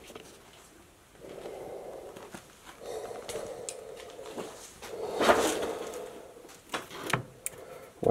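Soft scuffing and rustling of someone moving through a cluttered room of wooden shelves and loose paper, swelling a little past the middle. A few sharp knocks and clicks come near the end as a hardbound ledger on a shelf is handled.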